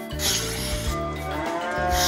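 A dairy cow mooing once, starting a little past halfway: one long call that rises and then falls in pitch, over background music.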